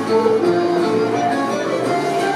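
Live folk band playing a scottische dance tune: a flute melody in held notes over strummed guitars and bass.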